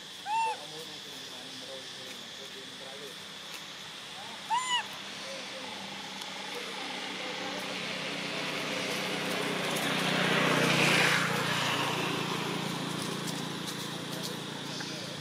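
Young macaque giving short, high calls that rise and fall: one about half a second in and two in quick succession a few seconds later. A rushing noise swells and fades in the second half.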